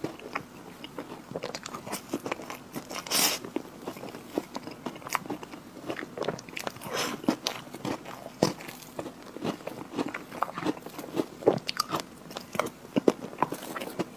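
Close-miked chewing and wet mouth smacks of a mouthful of chocolate Oreo cake, with many small irregular clicks and a brief louder noise about three seconds in.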